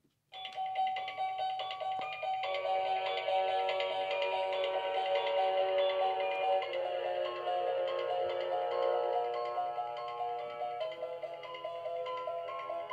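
Tinny electronic melody of short chiming notes from a small speaker, the kind of sound chip built into Halloween decorations, starting suddenly just after the start and playing on steadily.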